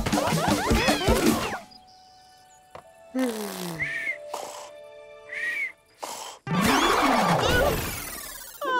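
Cartoon sound effects: a loud busy burst that stops about a second and a half in, then a sleeping character's comic snoring, a falling tone followed by a short high whistle, repeated. Near the end comes a sudden loud crash as he is knocked out of his hammock.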